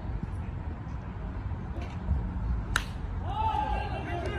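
A pitched baseball meeting something with one sharp crack about three quarters of the way through, over a steady low background rumble. Right after it a man's raised voice calls out.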